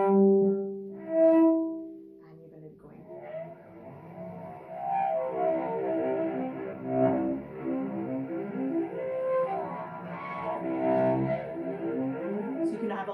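Cello played with the bow, sounding harmonics for an eerie effect: a few long, clear notes in the first two seconds, then a quieter, fuller passage of many overlapping notes.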